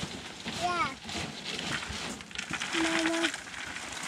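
Wood chips rustling and spilling as they are scooped by hand into a bucket, with short voiced sounds about a second in and again near the end.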